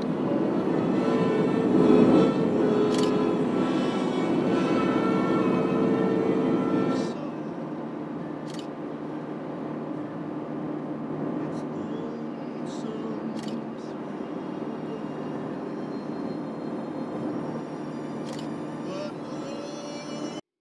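Nissan Vanette van driving, heard from inside the cab: a steady drone of engine and road noise that drops clearly in level about seven seconds in and runs on quieter.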